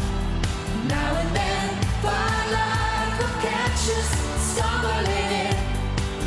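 Live band playing a pop song, with a steady drum and bass beat and a held melody line over it, rising about a second in.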